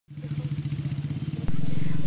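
A vehicle engine running, a low sound with a rapid, even pulsing beat. About one and a half seconds in there is a click, and a steadier, louder low hum continues.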